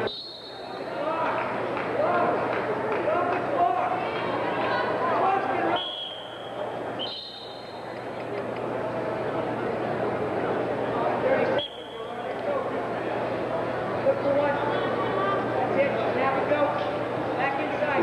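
Spectators in gymnasium stands talking and calling out, many overlapping voices with no single clear speaker. The noise dips suddenly and briefly about six and twelve seconds in.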